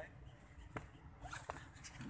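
Faint handling noise: two sharp clicks about three-quarters of a second apart, with a brief rustle, over a low steady rumble.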